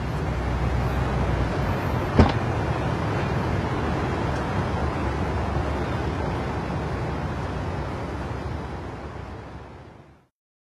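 Steady street traffic noise that fades away near the end, with one sharp click about two seconds in.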